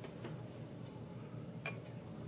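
A few faint clicks from fly-tying tools being handled at the vise, with one sharper, light metallic tick about one and a half seconds in.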